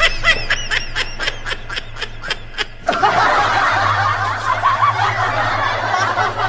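A high-pitched cackling ghost laugh of the kind given to the kuntilanak: about ten quick laughs in a row, then, about three seconds in, it suddenly gives way to a dense layer of many overlapping giggles.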